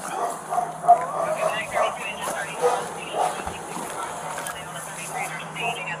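A dog barking several times, with indistinct voices in the background.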